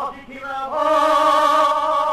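Male cantor's voice singing Jewish liturgical chant. After a short note and a brief dip, it slides up about two-thirds of a second in into a long held note with vibrato.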